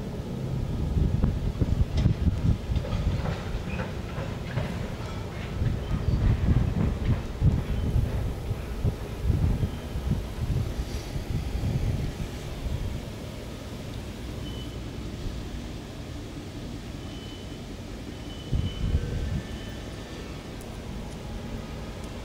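CN diesel road-switcher and a cut of tank cars rolling slowly through a yard switching move: wheels rumbling and clacking over the rail joints. The sound is loudest and most uneven in the first half, eases to a quieter rumble after about 13 seconds, and swells briefly near 19 seconds.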